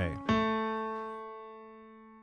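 A single piano note, the A, struck about a third of a second in and left to ring, fading away slowly.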